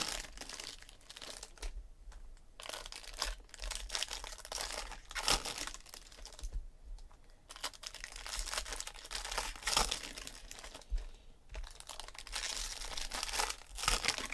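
Foil wrappers of 2016 Bowman Draft baseball card packs crinkling and tearing as they are ripped open by hand, in irregular bursts.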